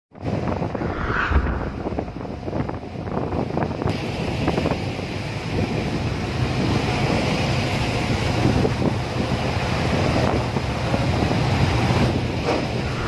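Ferry engine droning steadily with a constant low hum, under wind buffeting the microphone and rushing sea water.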